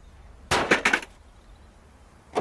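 A short clatter of sharp knocks about half a second in: a vehicle door being shut as a sound effect.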